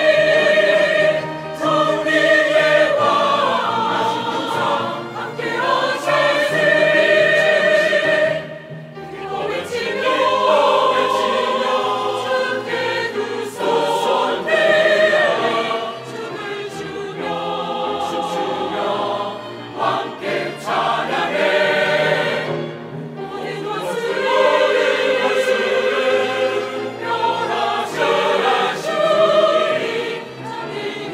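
Mixed choir of men's and women's voices singing a church anthem in Korean, in long sung phrases with brief breaks between them.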